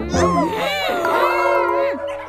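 Two long, wavering, meow-like cartoon cries, one after the other, over light background music.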